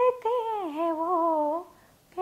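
A woman singing unaccompanied, holding one long melismatic note that slides down in pitch about half a second in and stops shortly before the end.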